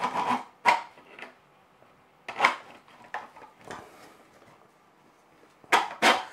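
An M12 steel rod being pushed through a 3D-printed plastic base and the parts being handled: a string of short knocks and scrapes at irregular intervals, a second or so apart.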